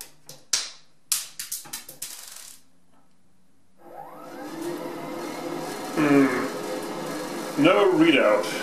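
A few sharp clicks from pressing the power button on a tankless water heater's wall remote. About four seconds in, the Rheem RTG-70DVLN tankless water heater's blower fan spins up with a rising whine and then runs steadily, even though no hot water is being drawn.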